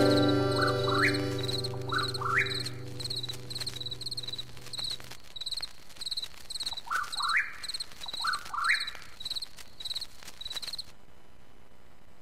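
The last chord of an acoustic string-band song rings and fades out about five seconds in. Over it and after it, night insects chirp steadily at about two chirps a second, and an animal gives pairs of rising calls twice, until the sound drops away near the end.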